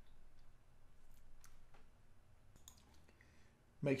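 Faint computer mouse clicks: a few scattered single clicks over a low room hum.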